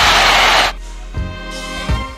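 Stadium crowd noise from a football broadcast, cut off abruptly under a second in. Edited-in music with steady tones and low thumps takes over.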